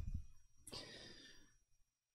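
A man's faint sigh, one breathy exhale lasting about half a second, starting under a second in.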